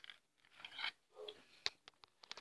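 Faint handling noise of a small object being picked up off a workbench: soft rustling, then a sharp click about two-thirds of the way through and another just before the end.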